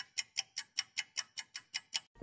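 Clock ticking sound effect: fast, even ticks at about five a second, each crisp and clean with silence between, marking a skip forward in time.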